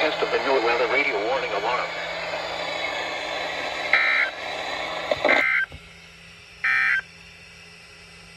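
A NOAA weather radio's speaker plays the broadcast voice over hiss for about five seconds. Then come three short, shrill two-tone data bursts, about a second and a half apart: the SAME digital codes that mark the end of the weekly test message.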